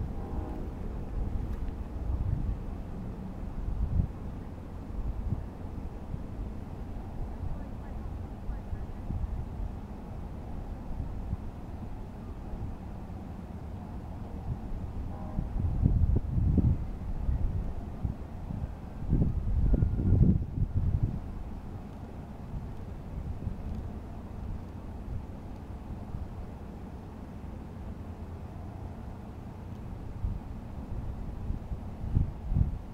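Wind buffeting an outdoor camera microphone as a low rumble, with two stronger gusts a little past halfway.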